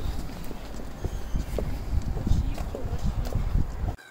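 Footsteps of several people walking on a stone pavement, with a heavy, irregular low rumble of wind buffeting the phone's microphone.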